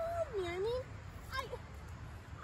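A person's voice: one drawn-out, swooping vocal sound that falls and then rises in pitch, followed by a short syllable about a second and a half in.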